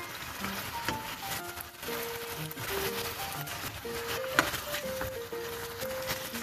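Background music: a slow melody of long held notes stepping from one pitch to the next.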